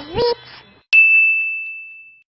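A single bright chime sound effect, a ding that strikes about a second in and rings out on one steady tone as it fades over about a second. Just before it, a short sung note glides upward and stops.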